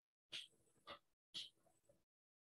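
Near silence: room tone with three faint, brief sounds about half a second apart.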